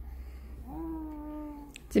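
A baby's voice: one long 'aah' held at a level pitch for about a second, starting just under a second in.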